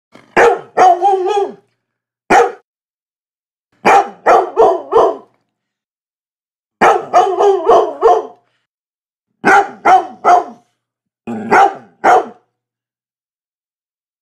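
A Labrador retriever barking loudly in six bursts of one to six quick barks each, with a second or more of dead silence between bursts.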